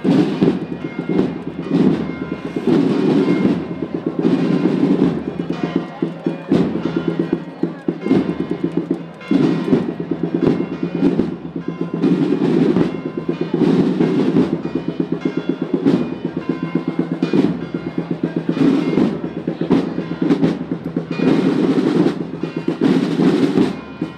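The drums of a marching bugle-and-drum band playing a steady march beat with drum rolls while the bugles rest.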